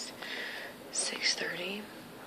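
A woman speaking softly, close to a whisper, with hissing consonants in the second half.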